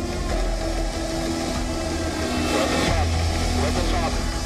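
Engine and rotor sound of a HAL Prachand light combat helicopter in flight: a steady low rumble.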